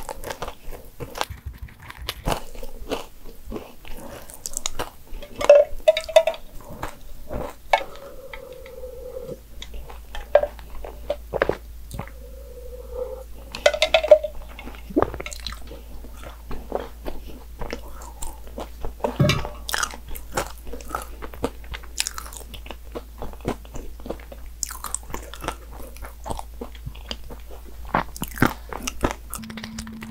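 Close-miked chewing of a soft baked financier cake: wet, sticky mouth sounds with frequent small bites and clicks. A few short humming tones come through a few times in the first half.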